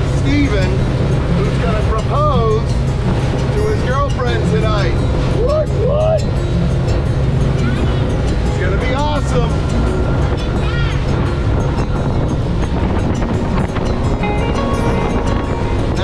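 Outboard motorboat running fast across open water: steady engine, wind and spray noise, with music and voice-like calls over it in the first half.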